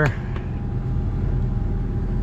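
A steady low motor hum running evenly, with a faint steady higher tone above it.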